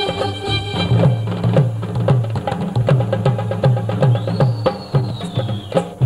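Live band playing an instrumental passage: drums and hand percussion keep a steady beat over a repeating bass line. About four seconds in, a high tone glides up and then falls away.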